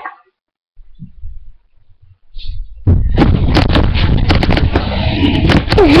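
Loud rumbling and knocking from a webcam's microphone being bumped and handled close up, starting about three seconds in, with a child's voice coming in near the end.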